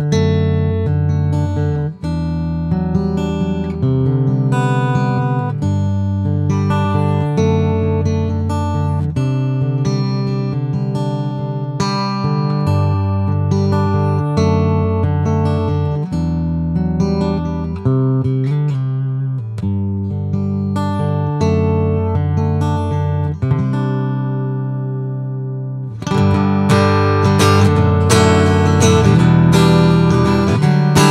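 PRS SE Hollowbody II Piezo played through its piezo pickup into a Line 6 Helix, giving a plugged-in acoustic guitar tone: picked chords ring out one after another, a chord is left to fade about three-quarters of the way in, then louder strumming starts.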